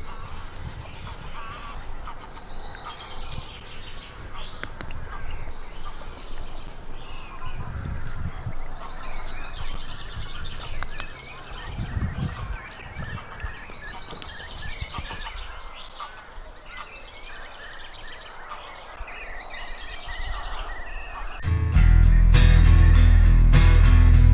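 Outdoor lakeside ambience: waterfowl and small birds calling and chirping, with occasional low rumbles. About 22 s in, music with guitar cuts in abruptly and much louder.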